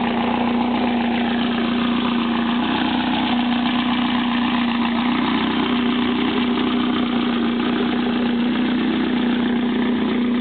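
Air-cooled Volkswagen Beetle flat-four engine idling steadily, with an even hum that holds the same pitch and loudness throughout.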